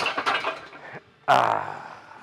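Metal clatter of a plate-loaded chest press as a heavy set is let down, then a second loud, sudden sound just past halfway that fades over most of a second, most likely a hard exhale of breath.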